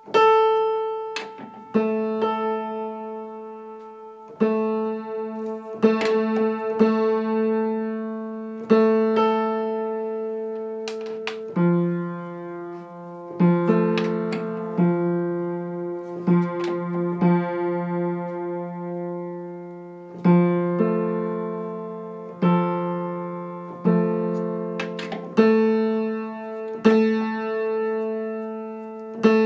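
Piano strings struck again and again in the A3–A4 octave, each note ringing and dying away before the next. These are tuning tests: the octave is played and then checked against lower test notes, which take over in the middle stretch, while the octave is brought to a clean, beatless state.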